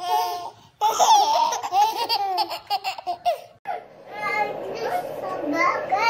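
Babies laughing in bursts of high, bending, squealy laughs. After a cut a little past halfway, a young child's voice babbles and calls out.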